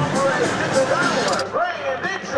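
Speech: voices talking over background noise, with an abrupt change in the sound about one and a half seconds in where the recording cuts to another scene.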